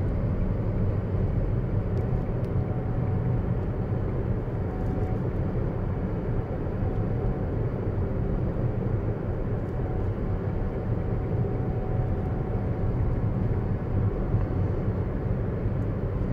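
Steady low tyre and road rumble inside the cabin of a Tesla Model S P85D electric car cruising at about 47 mph.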